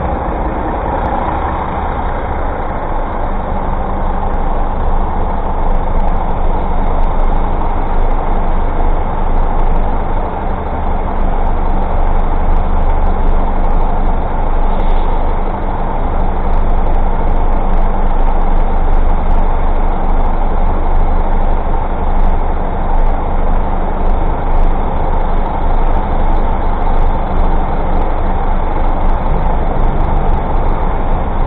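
Steady, loud city traffic noise close by, with the diesel engines of a double-decker bus and a delivery van running as the traffic crawls.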